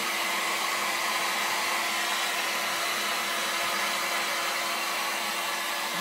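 An 800-watt heat gun running steadily, blowing hot air onto pizza cheese: an even rush of air over a constant motor hum.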